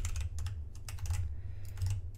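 Keys of a computer keyboard clicking in irregular quick runs as a line of code is typed, over a steady low hum.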